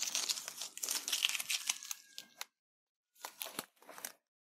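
Masking tape being peeled off the edge of watercolour paper: a long crackling rip lasting about two and a half seconds, then two short rips near the end.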